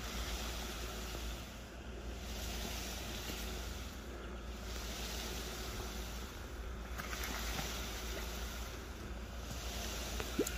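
Wet concrete flowing from the end of a concrete pump hose onto a rebar-meshed base: a steady wet rushing with a low running hum underneath. The hiss dips and returns about every two and a half seconds, like the pump's strokes pushing the concrete through the line.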